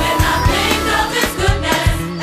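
Gospel choir singing over a band with a regular drum beat; the voices come in at the start.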